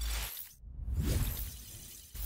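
Intro-animation sound effects: a low hit with a burst of noise at the start, then a swelling whoosh with a deep rumble that peaks about a second in and fades away.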